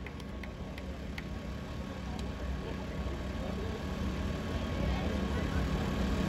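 Outdoor crowd background: a low, steady rumble with faint distant voices and a few small clicks, slowly getting louder.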